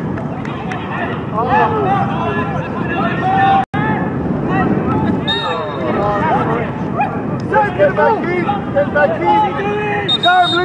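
Overlapping shouts and calls from players and touchline spectators at a football match, with a brief cut-out of all sound about a third of the way in.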